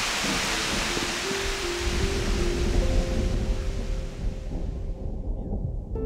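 Steady rain hissing through the rainforest, fading away over the last couple of seconds. Soft background music with long held notes comes in underneath about half a second in.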